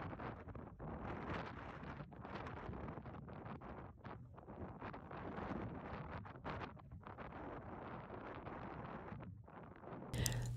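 Faint wind buffeting a phone's microphone, rising and falling unevenly.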